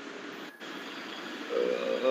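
Steady hiss of background noise over a video call's audio, with a person's voice starting a drawn-out 'uh' near the end.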